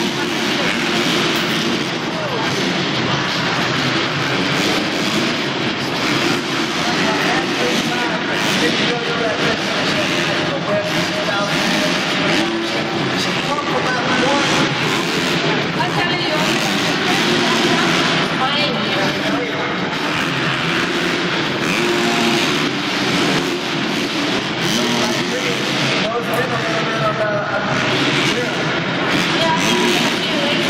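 Racing motocross bikes on an arena dirt track, engines revving up and down continuously as they lap, over a steady crowd hubbub and voices.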